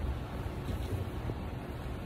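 Steady low rumble of moving air buffeting the phone's microphone, from a ceiling fan running overhead.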